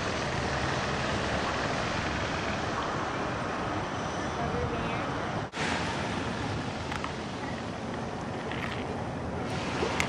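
Steady wash of ocean surf and wind noise, which cuts out for a moment about halfway through.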